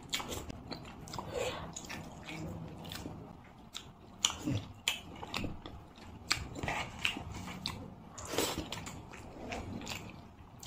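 Close-up mouth sounds of a person chewing a handful of rice and curry eaten by hand: irregular wet clicks and smacks throughout, the loudest about eight and a half seconds in.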